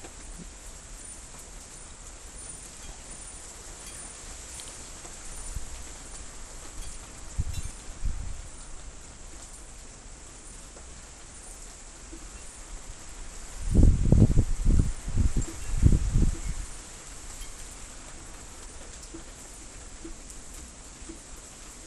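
Storm wind blowing steadily with a hiss, with gusts buffeting the microphone as low rumbles about eight seconds in and again in a longer spell from about fourteen to sixteen seconds.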